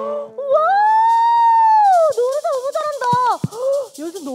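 A children's song's keyboard and acoustic guitar accompaniment fades out on its last chord. Then a long drawn-out voice rises and falls. About halfway through, clapping starts along with voices.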